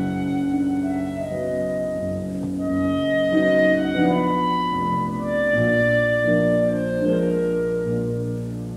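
Clarinet and piano playing a slow classical piece: the clarinet moves through a melody of long held notes over sustained piano chords, with deeper piano chords entering about halfway through.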